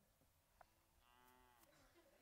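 A faint, short cow moo, arching in pitch, about a second in; the rest is near silence.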